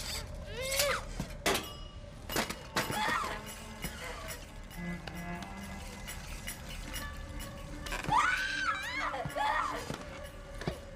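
A girl's anguished, strained cries and sobs, rising again near the end, with a couple of sharp crashes about one and two seconds in as a small wind-up toy is smashed, over a held music score.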